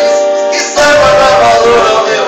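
Sertanejo song performed as a duet, with long held sung notes over the accompaniment; a new held note comes in a little under a second in.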